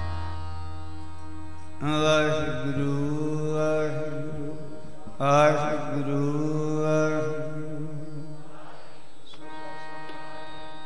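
Harmonium holding sustained notes under a male voice singing two long, wavering held phrases of Sikh kirtan, the first about two seconds in and the second about five seconds in. The tabla is silent; a low drum ring dies away in the first two seconds.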